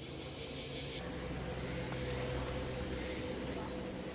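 Steady outdoor background noise with a faint, constant low hum from a distant engine.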